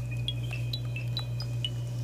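Soft background music of scattered high, ringing chime-like notes, several a second, over a steady low hum.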